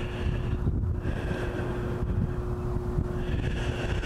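Wind buffeting the microphone: an uneven low rumble of gusts. A thin steady tone runs underneath and stops about three and a half seconds in.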